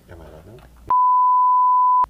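A loud, steady electronic beep: one pure, unwavering tone that starts abruptly about a second in, holds for about a second, and cuts off sharply.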